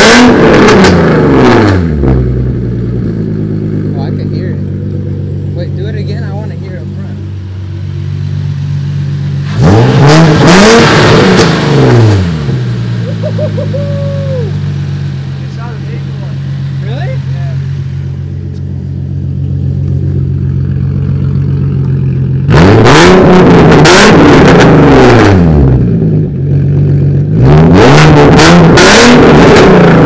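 Nissan 370Z's V6 with aftermarket intakes, test pipes and a three-inch single-exit exhaust, idling and revved four times: a rev dying away at the start, a short rev about ten seconds in, a longer one held for about three seconds past the two-thirds mark, and another climbing near the end.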